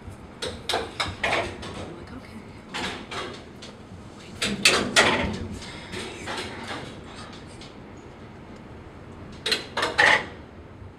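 Eiffel Tower elevator car clunking and clattering as it runs along its shaft, with irregular knocks over a steady low running noise; the loudest knocks come about five seconds in and again at the end.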